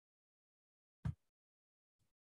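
Near silence, broken about a second in by a single short, low thump.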